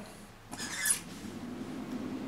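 A small servo whirs briefly about half a second in as it swings the air exchanger's vent door open, then the box's 12-volt fans start and run steadily with a low hum on high speed.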